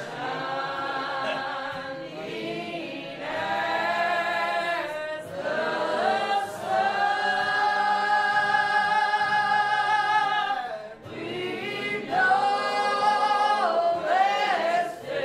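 Congregation singing a hymn together in long, drawn-out phrases, with one note held for about four seconds in the middle.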